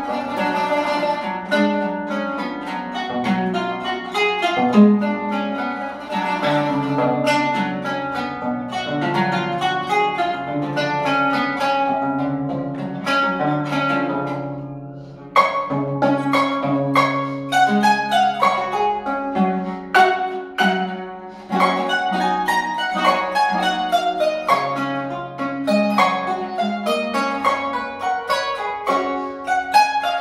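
Solo Armenian qanun (plucked trapezoidal zither) playing a quick melody of plucked notes over ringing low notes. About halfway through the playing dies away briefly, then comes back with a sharp, loud stroke.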